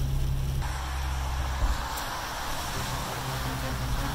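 Inside a Toyota FJ Cruiser driving in heavy rain: a steady low drive drone that fades out about a second and a half in, with an even wet hiss of rain and tyres on the wet road coming in about half a second in.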